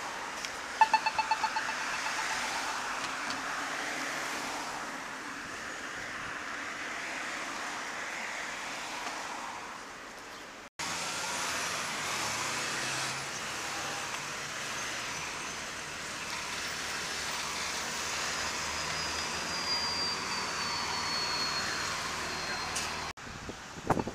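A pedestrian crosswalk push button pressed, answering with a quick run of short, sharp beeps about a second in, over steady street traffic of cars passing through the intersection. The sound jumps abruptly twice where clips are spliced.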